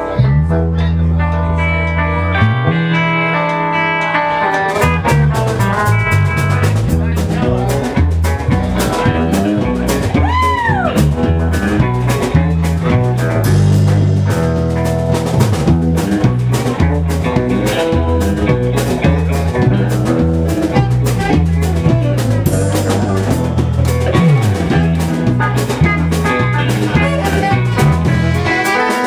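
Live blues band playing: electric guitars and bass guitar, with the drum kit coming in about five seconds in. A guitar note bends up and back down about ten seconds in.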